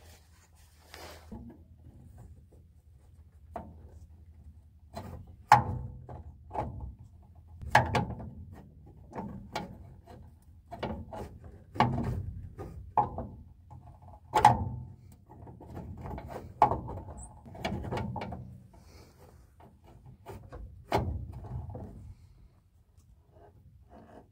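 Spare-tire lowering rod, a two-piece metal extension, knocking and scraping against the spare-tire hoist as it is worked onto the hoist's shaft end. It is a string of irregular clunks and clicks, the sharpest about five seconds in and near the middle. The rod had not been engaging the shaft, and these knocks come as it is pushed on to seat solidly.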